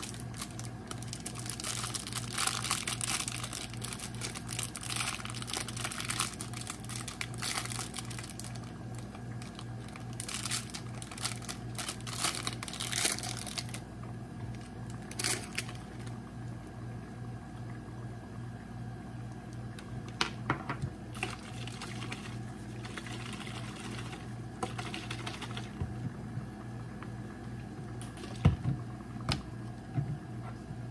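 Crinkling of plastic and paper wrapping as small glass diffuser bottles are unwrapped, dense for the first half, then a few sharp knocks as the bottles are set down on the counter. A steady low hum runs underneath.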